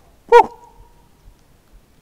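A single short, loud squeak made with the mouth by a hunter to call a coyote, rising and then falling in pitch.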